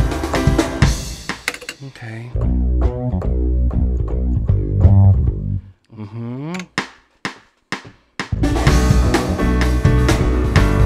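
Song playback of a programmed drum kit and guitar that drops away after about two seconds to a run of low bass notes, one of which slides in pitch. A few sharp clicks follow, and the full drum-and-guitar mix comes back in near the end.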